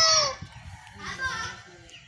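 A child's high voice trails off at the start, then a rooster crows faintly about a second in.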